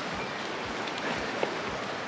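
Steady wind and breaking surf on a choppy sea, with wind buffeting the microphone as a low rumble.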